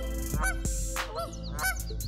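Canada geese honking, a rapid run of loud, repeated calls. They are the agitated honks of geese disturbed by a passing kayak, 'complaining'.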